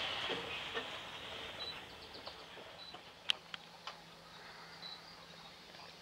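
Outdoor wetland ambience: a steady hiss with a few faint, short, high chirps of distant birds, scattered clicks with a sharp one about three seconds in, and a low steady hum from about halfway on.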